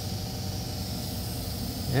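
A steady low mechanical hum under a faint even hiss, with no sudden sound.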